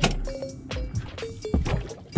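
Water against the hull of a small aluminum boat as it rocks under a person standing on its edge, with a sharp knock at the start and another about one and a half seconds in. Background music plays underneath.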